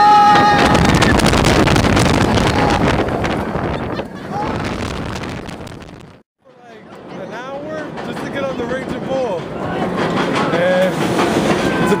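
Rushing wind and track roar on an inverted steel roller coaster as it drops, with a rider's long yell fading out in the first second. The roar cuts off a little after six seconds in, then quieter ride noise returns with shouting voices.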